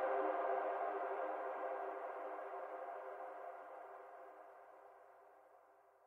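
A synthwave track's closing sustained synthesizer chord, fading out steadily to near silence; the low bass drops away about half a second in.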